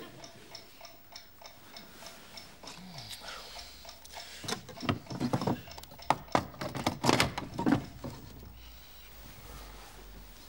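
Steady ticking of a wind-up bedside alarm clock. From about the middle, a run of sharp clinks and knocks as a glass and the clock are handled on the bedside table.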